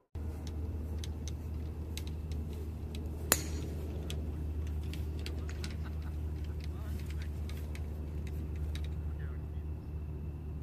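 A driver striking a golf ball off the tee: one sharp, ringing crack about three seconds in. Under it runs a steady low rumble with scattered small clicks.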